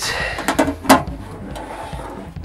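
Handling knocks from a Microvitec Cub CRT monitor's sheet-metal cabinet as it is gripped and turned on a table: a rustle, then two sharp knocks about half a second and a second in, the second the loudest.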